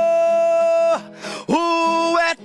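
A man singing a boi-bumbá toada over guitar. He holds one long, steady note for about a second, breaks off briefly, then takes up another held note.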